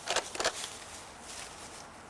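Footsteps through dry fallen leaves, a few loud crunches in the first half second, then fainter steps.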